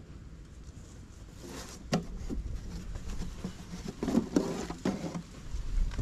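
Rustling and knocking as a beekeeper carries a nucleus box through long grass and sets it down close to the microphone. There is a sharp knock about two seconds in, and the handling noise grows louder and more rumbly near the end.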